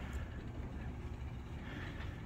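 Sectional garage door opening, driven by a LiftMaster 8500 wall-mount jackshaft opener: a steady low motor hum with the rolling noise of the door travelling up its tracks.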